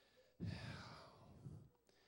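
A man's breath, a long exhale into a handheld microphone, starting about half a second in and fading out after about a second.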